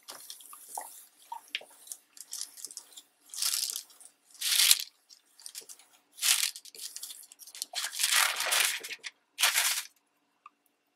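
A clothes iron pushed over a thin translucent sheet of paper laid on a printed page, the paper rustling and crinkling in several short irregular bursts as the iron melts crayon into the page's border. Near the end the sheet is lifted off with a last rustle.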